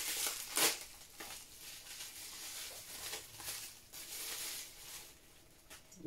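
Thin plastic wrapping crinkling and rustling as it is pulled off a small vinyl Funko Soda figure by hand. It is loudest in the first second, with a few sharp crackles, then goes on more softly and dies away near the end.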